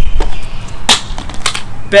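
Plastic container and bottle being handled: three short, sharp clicks, the middle one the loudest, over low wind rumble on the microphone.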